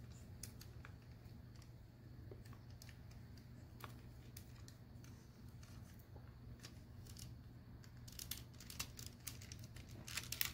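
Faint clicks and small rattles of hard plastic toy parts being moved and snapped into place by hand as an action figure is transformed, a few scattered ticks at first and a quicker run of them near the end, over a low steady hum.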